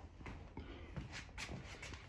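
Faint shuffling handling noise with a few light clicks, as the person moves around the motorcycle.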